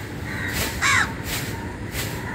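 A crow gives a single short, loud caw about a second in, over steady low background noise.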